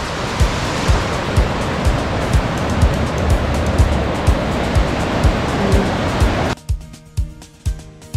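River rapids rushing, a dense steady sound of whitewater, over background music with a steady beat. The water sound cuts off suddenly about six and a half seconds in, leaving only the music.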